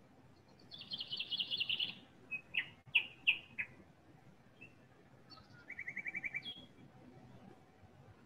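Small birds singing: a fast, high trill about a second in, a few short separate chirps, then a second, lower trill of even notes near the end.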